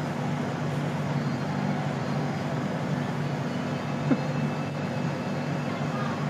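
A steady low hum over a constant background noise, with one faint click about four seconds in.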